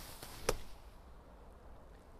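One sharp strike about half a second in: the club is a Ping Glide 4.0 high-bounce sand wedge, and it slaps into wet, compacted bunker sand to splash the ball out. The bounce lets it glide through and take a shallow, oval divot.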